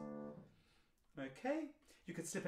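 Grand piano's closing chord of the song's accompaniment ringing on and dying away over about half a second, then a brief man's voice near the end.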